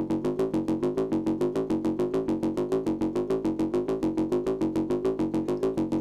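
Make Noise 0-Coast synthesizer playing a fast, evenly pulsing sequencer pattern of short, bright notes rich in upper harmonics. This is its clean dry signal, with no distortion applied yet.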